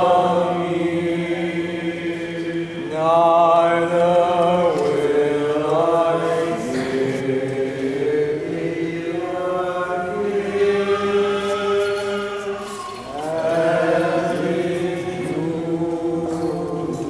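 Unaccompanied liturgical chant: voices sing a slow hymn in long held notes over a low sustained note. New phrases swell in about three, six, ten and thirteen seconds in.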